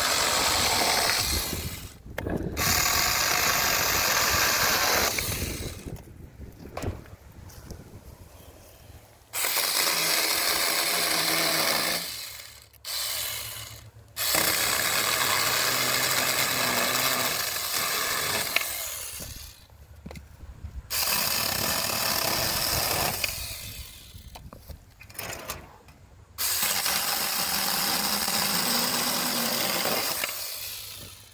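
Saker 20-volt cordless mini electric chainsaw with a 4-inch bar running and its chain cutting into a seasoned walnut branch, in about eight runs of a few seconds each with short pauses between them.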